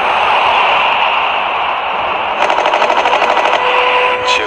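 Machine-gun fire: a loud, noisy din of gunfire, then a rapid burst of shots at about ten a second lasting a little over a second.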